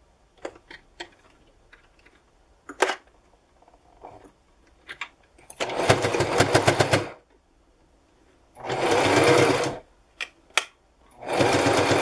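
Electric home sewing machine stitching through the fabric of a cloth face mask in three short runs, the last still going at the end. Before the first run there are a few sharp clicks.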